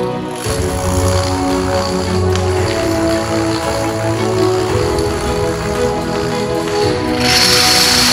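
Background music plays throughout. Near the end, a wall of dominoes collapses in a loud clattering rush of many tiles falling together.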